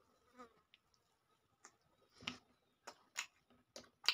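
A person chewing a mouthful of rice and chicken: a string of about six short, wet mouth clicks and smacks spread out over a few seconds, the loudest a little past halfway.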